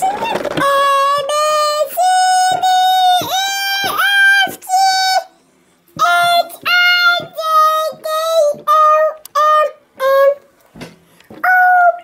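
A voice singing the letters of the alphabet one after another, each letter a short held note on a simple tune, with a brief pause about five seconds in.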